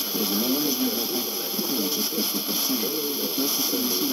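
A distant FM station received on a hi-fi tuner at 102.5 MHz: a voice talking, muffled and thin, under constant heavy hiss. The weak, noisy reception is that of a far-off transmitter carried in by tropospheric ducting.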